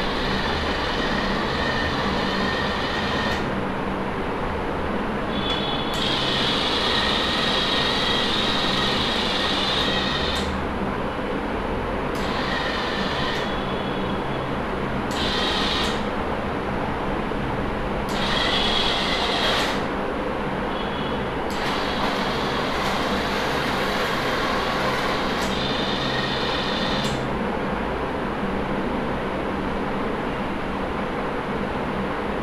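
Small DC gear motors of a hobby robot car whirring as it drives and turns on a hard floor. The whir cuts in and out in spells of a few seconds over a steady low hum.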